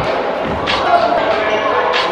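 A basketball bouncing on a hardwood gym floor during play, with voices in the hall.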